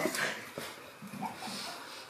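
A few faint, short vocal sounds from a person, about half a second in and again later, in a quiet room between loud shouts.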